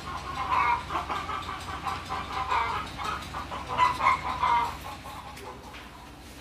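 Chickens clucking: a run of short, irregular calls, loudest about four seconds in, then tailing off near the end.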